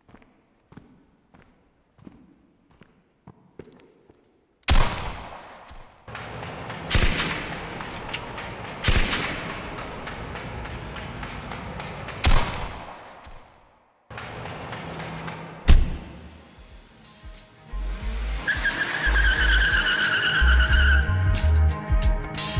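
Sound-effects intro to a music track. For the first four and a half seconds there are soft, evenly spaced steps or clicks. Then a sudden loud bang is followed by a steady hiss of noise, broken by several more loud sharp hits, and near the end deep bass notes and a high, slightly falling tone come in as the beat starts.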